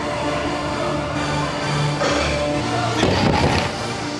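Background music with held, changing notes.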